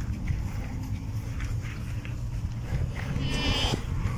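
A farm animal bleats once, with a short wavering call near the end, over a steady low rumble of wind on the microphone.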